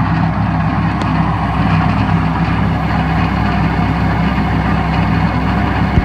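Tractor engine running steadily at idle, a low, even drone with no change in speed.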